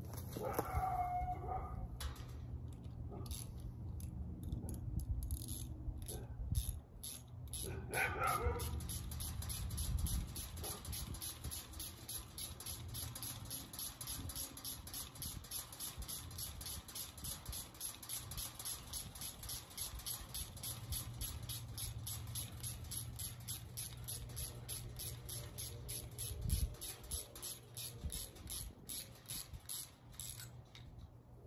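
A dog gives two drawn-out whines, one just after the start and another about eight seconds in. Through most of the rest a rapid, even clicking runs at about four to five clicks a second over a low steady hum.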